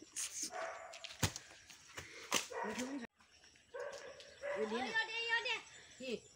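A dog whining and yipping in short, rising-and-falling calls, with a few sharp handling knocks before them.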